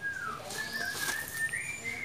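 A thin, high whistle that wavers slightly and steps up in pitch about a second and a half in.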